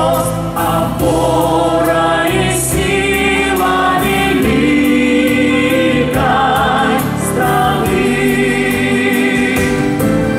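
A song sung into handheld microphones over instrumental backing music, the vocal melody held in long sustained notes.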